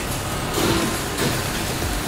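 Steady machine-shop running noise from automatic lathes turning engine valves, coolant splashing over the work.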